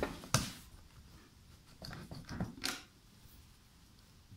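A metal clamp being fitted onto steel square tubing: one sharp click about a third of a second in, then a few lighter clicks and knocks a couple of seconds later.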